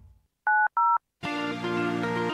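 Two short two-tone telephone-keypad (DTMF) beeps in quick succession. Electronic music starts right after them, a little over a second in.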